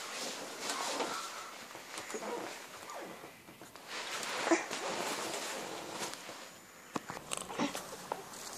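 Rustling and scraping handling noise from a phone camera being carried and moved about, with a few sharp knocks near the end.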